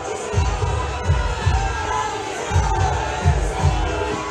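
Large street crowd cheering and shouting, many voices at once, over a steady run of low thuds.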